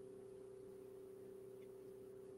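Near silence: faint room tone with a steady low two-tone hum.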